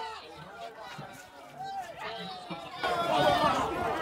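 Several people talking and calling out over each other outdoors, with street noise underneath; the voices get louder about three seconds in.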